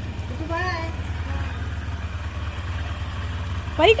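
Motorcycle engine idling steadily with a low, even pulse. A voice cuts in briefly about half a second in and again at the end.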